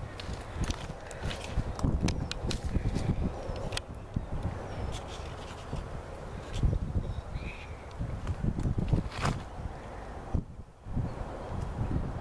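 Rustling, scraping and scattered clicks from the hand-held camera being handled and moved close to its microphone, over an uneven low rumble.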